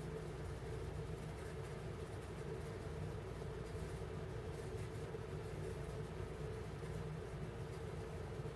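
Steady low background hum and rumble that does not change, with no distinct events.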